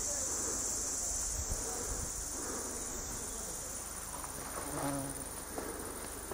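Cicadas buzzing in a steady, high-pitched chorus.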